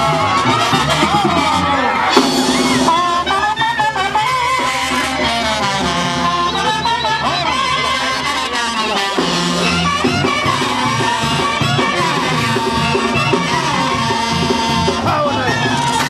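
Mexican banda music playing steadily, with brass carrying the melody.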